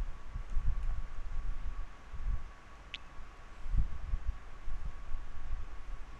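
Irregular low bumps and rumble on the microphone as a stylus draws on a pen tablet, with a faint steady high whine underneath and one short high blip about halfway through.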